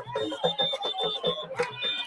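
Rally music from a dancing crowd: repeated drum strokes and voices, with a shrill, steady high tone held over the top.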